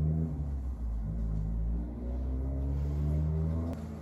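Low engine rumble, like a motor vehicle running, its pitch slowly rising and falling, with a single click near the end.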